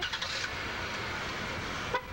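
Minivan engine revving: a steady loud rushing noise that stops at the end.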